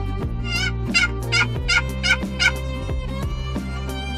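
Eastern wild turkey gobbler gobbling: a rapid, wavering run of about five loud notes beginning about half a second in and lasting about two seconds. Background music with steady string tones plays underneath.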